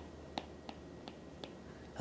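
Stylus tip tapping on a tablet screen while writing digits: a few faint, irregular ticks over quiet room tone.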